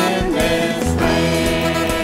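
Live contemporary worship band playing a song with acoustic and electric guitars, drum kit and piano. Group singing trails off about half a second in, and the instruments carry on, with a low sustained note coming in about a second in.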